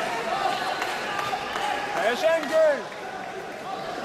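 Several voices shouting over the hum of a large sports-hall crowd, with two loud calls that rise and fall in pitch a little past halfway.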